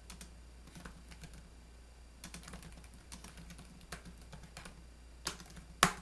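Typing on a computer keyboard: a run of soft key clicks as a terminal command is entered, with two louder keystrokes near the end.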